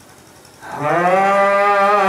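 A brief pause, then about two-thirds of a second in a man's voice begins a long, loud held sung note, sliding up at the start and then holding steady: the opening of a mourning lament (noha) chant.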